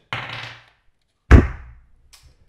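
A die thrown onto a wooden tabletop: a short breathy rush, then one loud, deep thud a little over a second in, followed by a couple of faint ticks as it settles.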